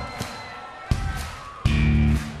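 Live punk rock band starting a song: a quieter stretch of crowd noise with a single sharp hit about a second in, then the electric guitars and bass guitar come in together, loud and sudden, near the end.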